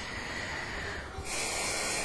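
A woman breathing, with a louder in-breath in the second half just before she speaks.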